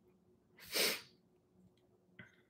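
A single short breath from a woman, about half a second long and a little under a second in, heard faintly against room tone.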